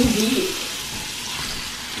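Meat searing in a hot enameled cast iron skillet: a steady sizzling hiss, with a brief voice at the very start.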